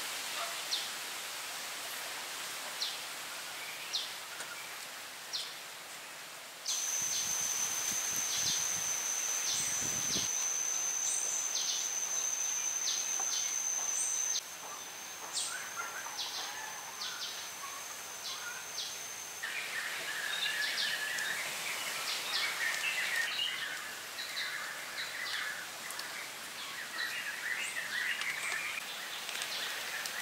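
Forest ambience with birds chirping and rustling, and occasional light knocks and rustles of wooden sticks being handled and lashed together. Through the middle stretch a steady high-pitched insect drone starts and stops abruptly.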